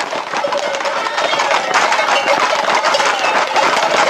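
Hooves of a packed group of Camargue horses clattering fast and irregularly on an asphalt road, mixed with running footsteps and men shouting.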